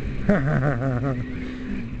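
A man laughing for about a second, his voice wavering up and down in pitch, over a steady low hum.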